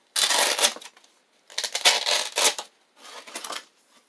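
Three loud bursts of rustling and scraping as 187 Killer protective pads and their straps are handled close to the microphone.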